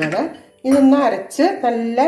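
A woman speaking, with light clinks of a stainless steel bowl being handled.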